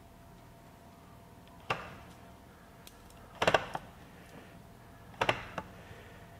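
Short plastic clicks and knocks from a SKIL 40V string trimmer's cutting head as it is turned by hand to wind trimmer line in. There is a single click just under two seconds in, a louder cluster of clicks around the middle, and another pair a little past five seconds, with quiet in between.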